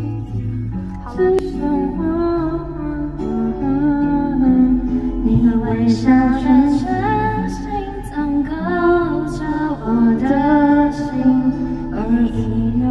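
Karaoke: a woman singing into a microphone over a pop backing track. The backing track plays throughout and the sung melody comes in about a second and a half in.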